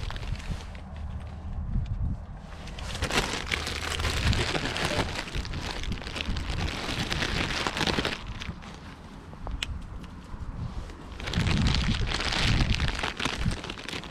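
Plastic bag of bird food rustling and crackling as it is handled, in two long stretches, the second near the end, over a low steady rumble.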